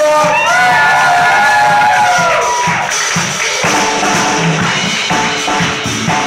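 Live reggae-funk band playing with drum kit and guitars, a steady beat under it. A melody line bends and glides in pitch over the first half, then the band carries on with rhythmic chords.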